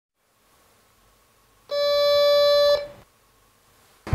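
A single held electronic synthesizer note, a steady beep-like tone about a second long, that starts near two seconds in and fades out quickly; silence before and after.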